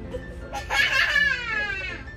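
A young child laughing loudly, a high-pitched laugh starting about half a second in and sliding down in pitch, over soft background music.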